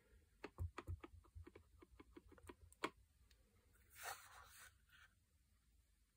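Clear acrylic stamp block dabbed again and again on an ink pad: a quick run of faint, light taps, about five or six a second, followed by a brief soft rustle.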